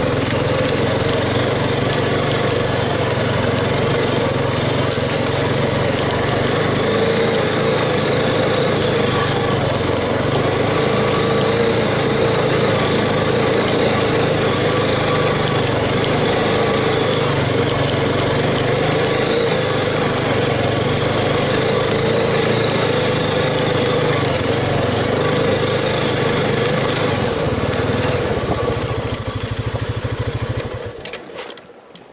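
ATV (quad) engine running steadily while the machine is ridden along, its note dropping lower near the end.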